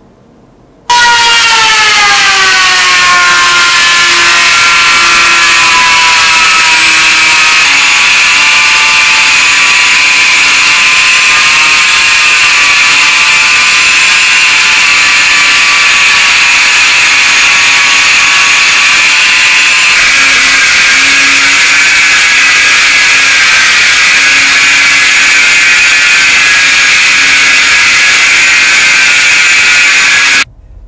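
Handheld rotary tool spinning a small wheel against a brass lighter sleeve. It gives a high motor whine that starts abruptly, drops in pitch over the first few seconds as it bears on the metal, then holds steady before cutting off.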